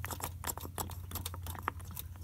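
Hand primer pump on top of a Toyota Prado diesel's fuel filter being pressed repeatedly by finger to prime the fuel system after running out of fuel, making a quick, irregular run of light plastic clicks over a steady low hum.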